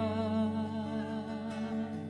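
Live worship music: sung voices holding a long note with vibrato over sustained keyboard and acoustic guitar chords, the held note fading near the end.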